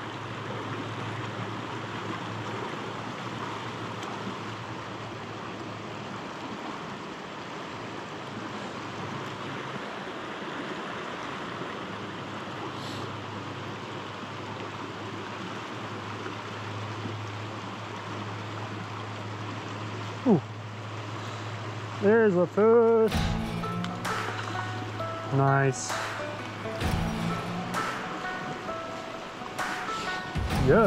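Steady rushing of a fast river riffle flowing over rocks, with soft background music under it. About twenty-two seconds in, louder music comes in with sharp peaks.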